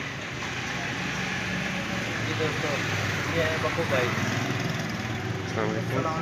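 An engine idling steadily, a low even hum, with faint voices talking over it.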